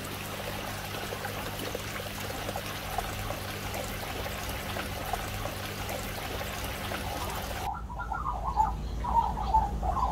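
Water pouring and trickling steadily over a low, steady hum. About eight seconds in, the sound cuts suddenly to bird calls over a low rumble.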